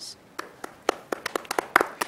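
A small group of people clapping their hands. A few scattered claps start about half a second in and come quicker toward the end.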